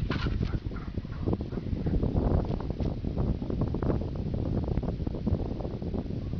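Wind buffeting the camera microphone, a loud uneven rumble, with a brief higher-pitched call right at the start.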